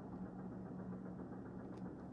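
Quiet, steady low background hum, with a faint click near the end.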